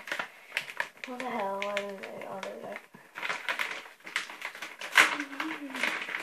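Girls talking quietly over a run of small clicks and knocks from items being handled near a glass bowl, with one sharper knock about five seconds in.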